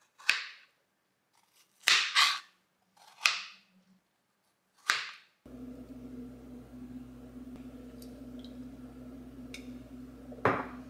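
Kitchen knife cutting through fresh strawberries onto a plastic cutting board: five sharp cuts, two of them close together. After about five and a half seconds, a steady low hum with a few faint small clicks.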